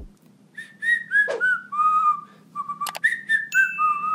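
A woman whistling a short, wandering tune, the notes sliding into one another, with a couple of sharp clicks about three seconds in.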